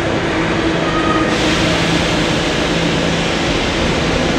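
Subway train of R68A cars standing at an underground platform with its doors closed, its equipment giving a steady hum with a few held tones. About a second in, a broad hiss of air rises and carries on.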